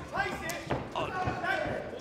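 Men's voices calling out in a hall, with a sharp smack about half a second in and a softer knock just after, from bare-knuckle heavyweights trading punches in the ring.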